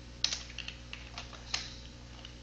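Computer keyboard keystrokes: a short run of irregular key clicks as a word is typed, with the sharpest presses about a quarter second in and again about a second and a half in.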